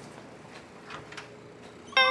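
Quiet background ambience with a few faint clicks about a second in.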